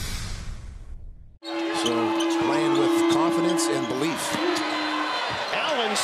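A logo sting's whoosh with music fades out, and after a brief gap the sound of a basketball game in an arena takes over: a ball bouncing on the hardwood court, with voices and crowd noise. A steady held tone runs under it until about five seconds in.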